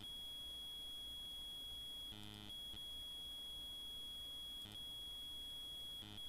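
A faint, steady high-pitched whine, with a short buzz about two seconds in.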